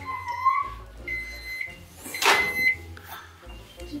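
Microwave oven beeping its end-of-cycle signal, short high beeps about a second apart, with the clunk of its door being opened a couple of seconds in.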